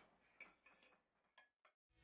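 Near silence, with one faint click about half a second in.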